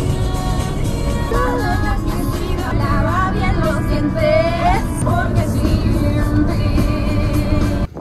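Background music: a melody line gliding over a steady accompaniment, which starts and cuts off abruptly.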